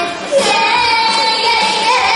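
A young girl singing into a microphone over a pop backing track, holding one long note from about half a second in that bends slightly upward near the end.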